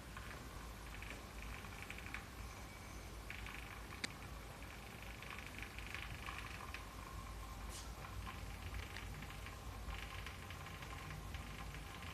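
Quiet indoor room tone with a steady low hum and faint scattered clicks and rustles, one sharper click about four seconds in.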